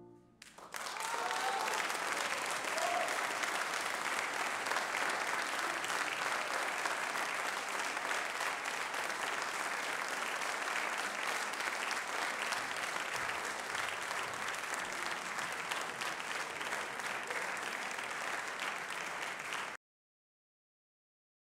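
Concert-hall audience applause breaking out about half a second in as the final piano chord dies away, a steady clapping that stops abruptly near the end.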